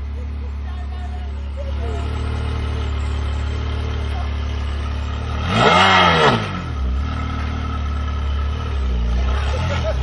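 Ferrari V8 engine idling steadily, then blipped once hard, revs rising and falling back within about a second near the middle, followed by a couple of smaller blips near the end.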